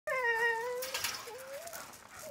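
A husky's high, drawn-out whine lasting about a second, then a shorter rising whine, with a brief burst of noise between them.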